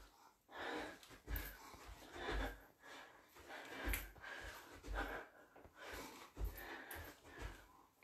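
A woman breathing hard in short, faint puffs as she throws punches during shadowboxing, about one or two a second, each with a soft low thud of her body or feet.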